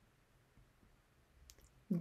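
Near silence, with a faint click about one and a half seconds in, and a woman starting to speak right at the end.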